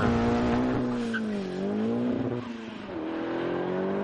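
A 1979 Mk1 VW Golf with a tuned, turbocharged 1.8-litre Mk4 Golf engine of around 700 horsepower, accelerating hard from a standing start. The engine note dips and rises in pitch twice.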